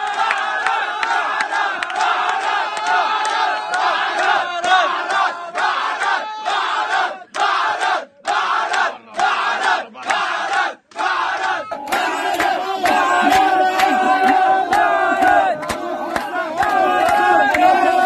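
A crowd of football fans cheering and shouting together in a packed room, many voices at once, with a few short breaks between shouts around the middle. About twelve seconds in, the sound cuts to another recording of the same loud crowd.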